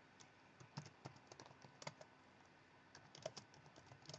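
Faint clicking of typing on a computer keyboard: a quick run of keystrokes, a short pause, then a second brief run.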